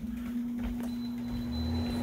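A steady mechanical hum, held at one low pitch, that starts suddenly and runs on; a faint high whine joins it about a second in.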